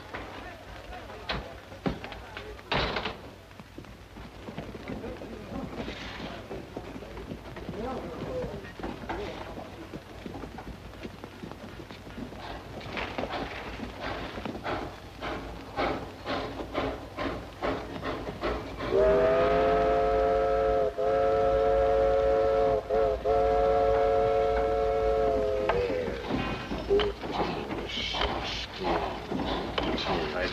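Steam locomotive chuffing in a steady rhythm, then its whistle blowing one long chord of several notes for about seven seconds, briefly dipping twice.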